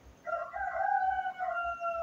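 A rooster crowing once: one long call of nearly two seconds that sinks slightly in pitch toward the end.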